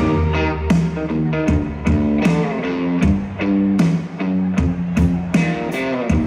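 Live country band playing an instrumental intro on electric guitar, bass and drums, with a steady beat of about one drum hit every three-quarters of a second. The full band comes in right at the start, over the keyboard lead-in.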